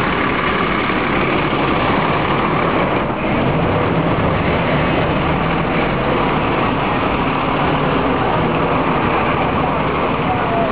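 Steady street noise dominated by a red bus's engine idling close by, with passers-by talking over it.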